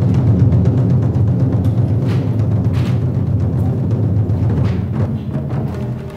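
Loud music built on a deep, rolling drum rumble with occasional sharper hits, easing slightly near the end.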